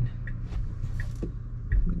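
Cabin noise inside a Tesla Model Y electric car waiting or creeping at low speed: a steady low hum with a few faint ticks about a second in.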